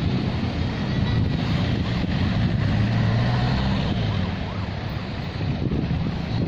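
Wind buffeting the microphone over the low rumble of passing traffic: a van and cars driving by, their engine hum swelling and fading about halfway through.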